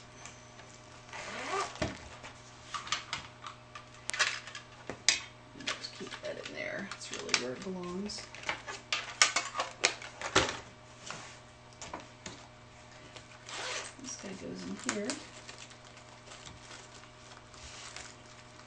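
Art supplies being packed into a zippered sketch-kit case with mesh netting pockets: scattered clicks, taps and rustles as pencils and small containers are handled and pushed into place, with a few sharper clacks.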